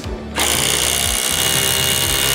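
Milwaukee M18 Fuel cordless impact driver running a long screw into a timber ledger beam, starting about half a second in and hammering steadily with a constant high-pitched tone.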